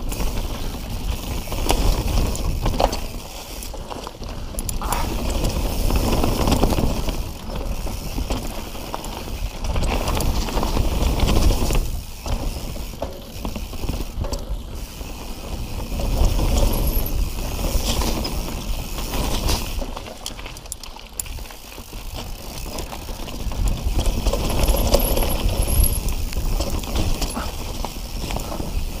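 Mountain bike riding downhill on a dirt trail covered in dry leaves: tyre noise over dirt and leaves with the bike rattling and clicking over bumps. A low rumble swells and fades every few seconds as the speed changes.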